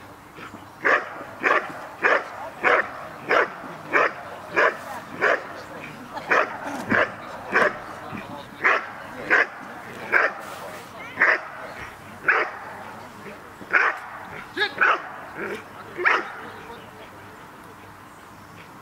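A dog barking steadily at a helper in the guard-and-bark phase of IPO protection work, holding him without biting the sleeve. The barks come about one and a half a second, slow a little later on, and stop about two seconds before the end.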